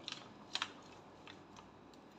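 A spatula mixing noodles in an aluminium foil tray, giving a few light clicks and scrapes against the foil, the clearest about half a second in.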